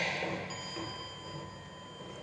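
Playback of an experimental sound piece composed from recordings of a working factory (looms, voices, footsteps) and of children pretending to be the factory. A noisy burst fades in the first half-second, then several thin, steady high tones hold.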